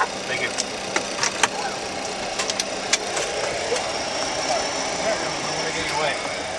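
Steady rushing air-and-fan noise of a Boeing 737-300 cockpit with a faint low hum under it, broken by a scatter of sharp clicks, most of them in the first half.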